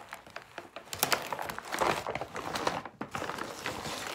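Brown paper bag and plastic-wrapped food packets rustling and crinkling as hands rummage inside the bag. It is quieter for the first second, then busier and uneven.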